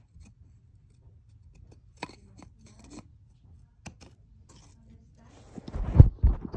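Wooden toy train track pieces clicking and knocking lightly as they are handled, a few sparse clicks spread over several seconds. Near the end, a louder rustle and thump.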